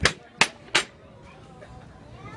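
Three sharp knocks or clicks in quick succession, about a third of a second apart, followed by faint background chatter of a busy restaurant.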